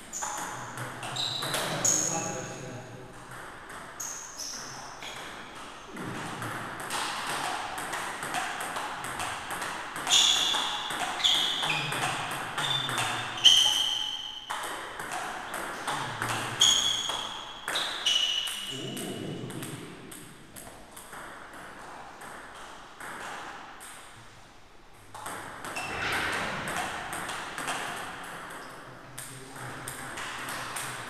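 Table tennis ball clicking back and forth between bats and table in quick runs of rallies, with pauses between points. Short high squeaks come in among the strokes.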